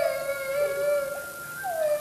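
A long howl sliding down in pitch into a held, wavering note, then a second downward slide starting near the end, over background music.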